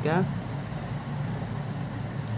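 A man's voice ends a word in the first moment. A steady low hum with a faint hiss carries on under it, from an unseen machine or ventilation in the room.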